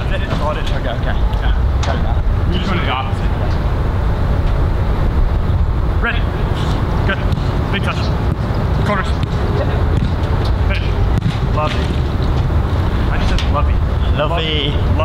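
A football being struck during passing work, heard as sharp knocks every second or few over a steady low outdoor rumble.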